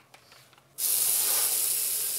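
Bathroom basin tap turned on about a second in, water running steadily into the sink.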